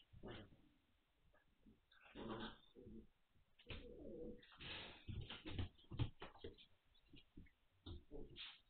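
Magyar Vizsla puppies making short grumbling and whining play noises, with a few sharp knocks of paws or bodies on the floor near the middle, heard thin and dull through a security camera's microphone.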